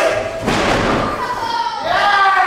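A wrestler's body slamming down onto the wrestling ring canvas with a single heavy thud about half a second in. Voices from the audience shout around it.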